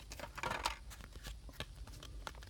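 Hockey trading cards being handled and laid down: a brief soft swish of card sliding on card about half a second in, then a few light ticks of card edges, over a faint low hum.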